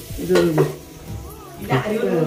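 Two short voiced calls from a person, a bit more than a second apart, with light rustling handling noise between them.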